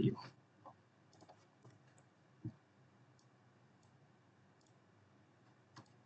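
Faint, sparse computer keyboard keystrokes while code is typed, a few scattered clicks with one slightly louder knock about two and a half seconds in.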